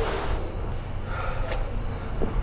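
Crickets chirping steadily in a fast, even pulsing trill, over a low background rumble.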